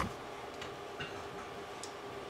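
Dry-erase marker tapping against a whiteboard while writing: one sharp tap at the start, then a few faint, irregular ticks, over a steady low room hum.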